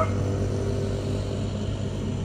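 Motor vehicle engine running steadily at idle, an even low hum that neither rises nor falls.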